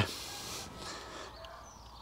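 Quiet outdoor background in a pause between speech: a faint, even hiss with no distinct event standing out.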